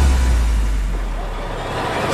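Deep low bass drone that fades away, with a faint hiss above it: a sound-design transition between two pieces of soundtrack music.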